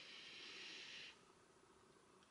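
A person taking a slow deep breath in: a soft, steady hiss of air that stops about a second in.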